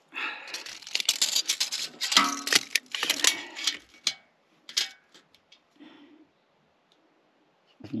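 Steel tape measure being pulled out and held against a metal trailer support: a run of rattling and clicking from the blade and case for the first few seconds, a few single clicks after, then quiet.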